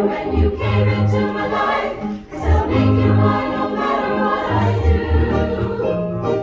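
Choir singing in harmony with amplified keyboard accompaniment, low bass notes sounding on a steady beat about once a second.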